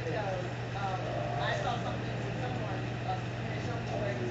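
Faint, indistinct voices talking in the room over a steady low hum.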